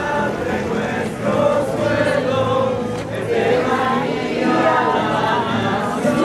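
A group of voices singing a hymn together, with long held notes.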